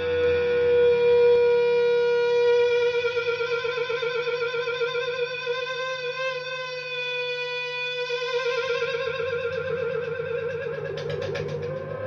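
Electric guitar feedback from the amp: one sustained, singing note, held steady for a couple of seconds and then wavering up and down in pitch as the whammy bar is worked to control it. A short crackle of clicks comes near the end.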